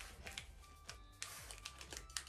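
Plastic chocolate-bar wrapper being picked at and torn open by hand, a faint run of small crinkles and clicks.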